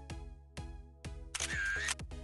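Background electronic music with a steady beat. About one and a half seconds in, a loud camera-shutter sound effect lasting about half a second cuts across it as a photo is taken.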